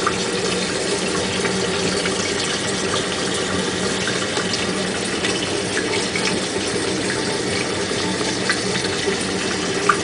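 Home-made Tesla disc turbine built from CDs, running at full throttle on faucet water pressure: a steady rush of water with a low, even hum.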